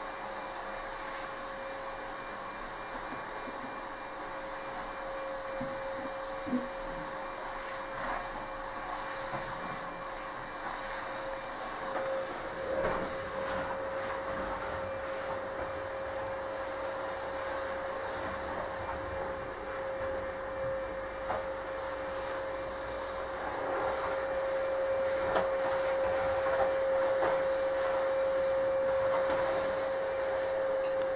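A steady high-pitched whine over a constant hiss, from some running machine, with a few faint knocks; it gets a little louder in the last few seconds.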